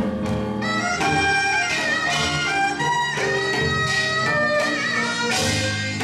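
Korean traditional (gugak) instrumental ensemble playing, a daegeum bamboo flute among the instruments, with long held melody notes, some slightly wavering, over a sustained low accompaniment.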